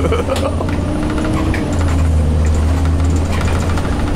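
Gillig transit bus under way, heard from inside: a steady low engine and drivetrain drone that grows louder from about two seconds in and eases near the end.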